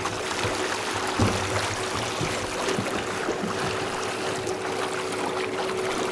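Water splashing and sloshing beside the boat as a large white sturgeon thrashes at the surface alongside the hull, over a steady hum and a few light knocks.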